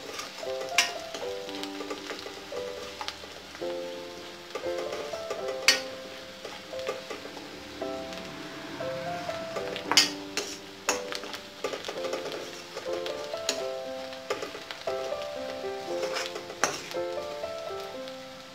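Onion, garlic and green chilli sizzling in oil in an iron kadhai while a spatula stirs them, with several sharp knocks of the spatula against the pan. Background music with a melody of held notes plays throughout.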